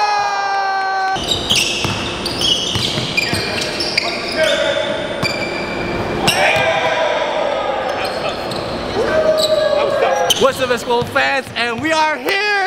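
Basketballs bouncing on a hardwood gym floor, with voices ringing out in the big hall; near the end, people talking and laughing.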